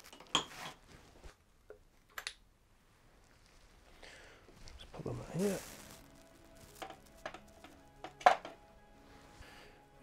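Scattered light metallic clinks and taps as bucket tappets (cam followers) are lifted out of a cylinder head and set into a plastic compartment tray. There are a few early on and a cluster of them in the second half.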